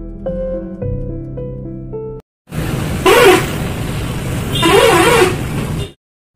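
Soft electric piano music that cuts off about two seconds in. After a brief silence comes loud street noise with two vehicle horn honks nearly two seconds apart.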